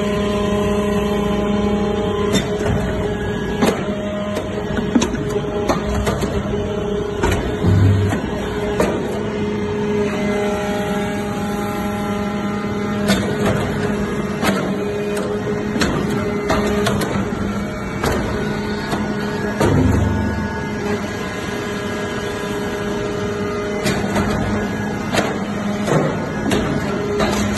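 A hydraulic metal powder briquetting press running: the hydraulic pump unit keeps up a steady hum, with scattered mechanical clicks and knocks from the press and two low thuds about twelve seconds apart.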